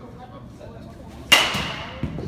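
A metal baseball bat hits a pitched ball once, about a second and a half in: a sharp crack with a ringing ping that fades over about half a second.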